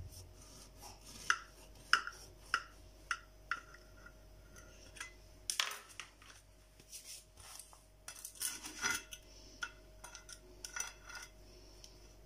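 A knife cutting through a soft sponge cake, its blade tapping and scraping against the serving plate in a series of light clicks, with a louder scrape about halfway. Later, a cake server scrapes and clicks on the plate as it is slid under a slice.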